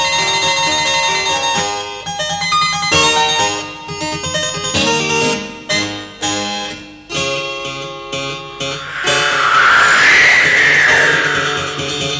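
Cartoon score of quick plucked string and keyboard notes. About nine seconds in, a loud whooshing sound effect swells up over the music and fades again over about two seconds.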